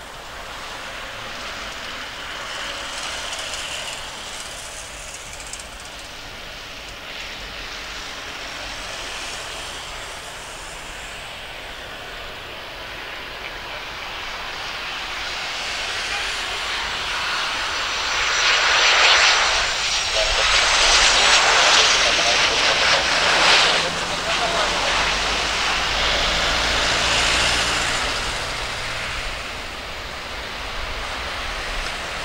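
Boeing 737-800 airliner with its two CFM56 turbofan engines, landing. The jet rumble grows steadily louder as it approaches and is loudest for several seconds as it passes close by, with a high engine whine that drops in pitch. It then eases off as the plane settles onto the runway.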